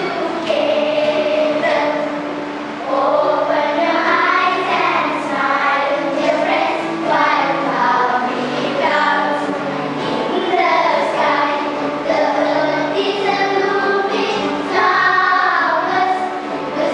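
A song sung by a group of children's voices over a steady musical backing.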